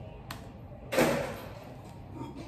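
A single sharp, loud knock about a second in, dying away over about half a second, with a fainter click just before it.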